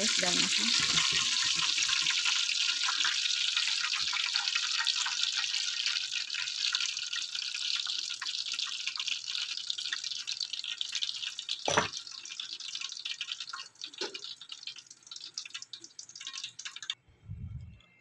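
Spring rolls deep-frying in hot oil: a steady sizzle with fine crackling that thins out as they are lifted from the oil in a wire strainer. There is a single sharp knock about twelve seconds in.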